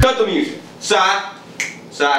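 Dance music cuts off abruptly, then a man gives three short wordless vocal exclamations, the first falling in pitch.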